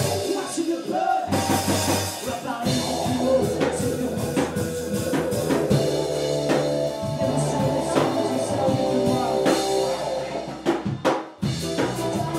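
A live rock band playing: electric guitars, bass, keyboard and a driving drum kit. The music briefly drops out near the end, then the band comes straight back in.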